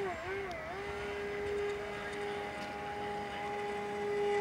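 Electric motor and propeller of an RC foam Edge 540 aerobatic plane whining at full throttle: the pitch wavers for the first half-second or so, then holds one steady tone as the plane hangs on its prop. Full throttle only just holds it in a hover, which the pilots blame on a propeller that is too small.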